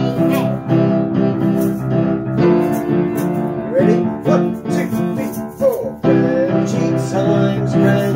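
Upright piano played by a child: held chords that change every one to three seconds, with some notes not quite right. The player is still slightly messing up the notes he's going for.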